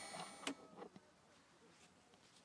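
Steady high electronic whine from the small plane's cockpit electronics, fading, then cut off by a sharp click about half a second in, as the GPS and avionics are switched off; near silence follows.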